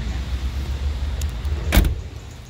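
A van's cab door slamming shut once, near the end, over a steady low rumble; the rumble and the background sound fall away after the slam.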